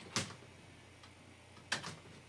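Two sharp clicks of computer keyboard keys being pressed, about a second and a half apart, as a boot device is picked from a PC's BIOS boot menu.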